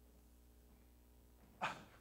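Near silence with a faint steady low hum, broken about a second and a half in by a short sharp sound from the preacher's voice, a breath just before he speaks again.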